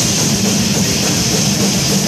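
A doom metal band playing live and loud: heavily distorted electric guitars over a pounding drum kit.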